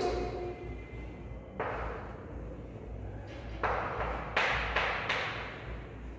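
Chalk writing on a blackboard: a few separate scratchy strokes about a second or two apart, the densest in the last two seconds, over a steady low hum.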